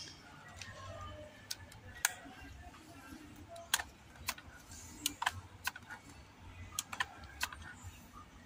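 Sharp mechanical clicks, about a dozen spread irregularly, from a Daisy 880 multi-pump air rifle being handled and worked.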